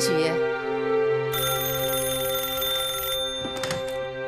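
Old-style telephone bell ringing for about two seconds, then stopping, followed by a few clicks near the end as the handset is lifted. Background music runs underneath.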